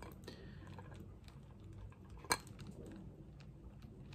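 Faint plastic clicks and taps from a small clear-domed plastic nativity ornament being turned in the hands, its loose figure shifting inside; one sharper click a little past halfway.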